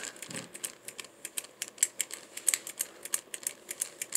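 Irregular light plastic clicks and taps from a small plastic pterodactyl toy being handled, its wings being worked back and forth.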